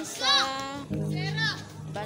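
A voice over added background music, with the music's steady low notes coming in about halfway through.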